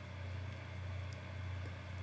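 A steady low hum with faint background noise underneath.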